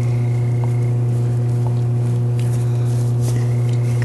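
A steady low hum with faint higher overtones, unchanging throughout, with a few faint ticks over it.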